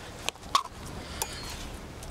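Three short knocks and clicks from a filleting knife working against a plastic cutting board as a cod fillet is trimmed. The loudest comes about half a second in.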